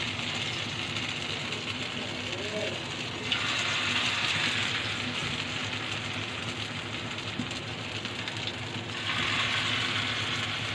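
Hot oil sizzling as shrimp fritters deep-fry in a pan. The sizzle grows louder about three seconds in and again near the end, as more spoonfuls of batter go into the oil.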